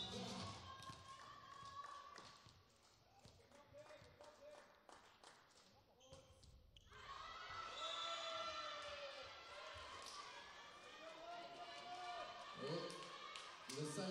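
A volleyball rally heard faintly in a large hall: a string of sharp ball hits and footfalls on the court. About seven seconds in, voices take over.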